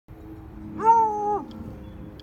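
Treeing Walker Coonhound barking at a rabbit: one drawn-out baying bark about a second in, lasting about half a second. Its pitch rises at the start and falls away at the end.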